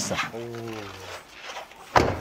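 A sedan's car door shutting once near the end with a dull, solid thud, after a man's drawn-out voiced sound.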